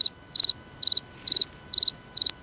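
A regular series of short, high-pitched chirps, about two a second, each made of a few rapid pulses, five in all.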